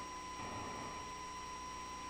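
Quiet room tone through the meeting's microphone system: a steady hiss and low hum with a thin, steady high tone, and faint soft sounds of movement about half a second in.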